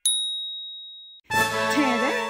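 A subscribe-button 'ding' sound effect: one sharp, bright chime whose single high tone fades away over about a second. After a brief silence, a voice over music comes in near the end.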